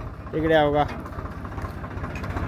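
Tractor diesel engine idling, a steady low pulsing rumble underneath a man's brief remark.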